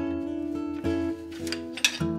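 Acoustic guitar music: plucked notes ring and sustain, with new notes struck about a second in and again just before the end.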